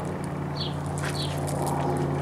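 A small bird gives two short, high, falling chirps about half a second apart, over a steady low hum.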